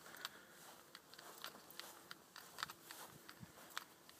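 Faint footsteps on grass, a few soft irregular crunches and clicks over a quiet outdoor background.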